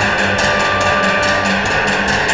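Chinese traditional orchestra playing, with rapid, evenly repeated strokes, about six or seven a second, over held notes.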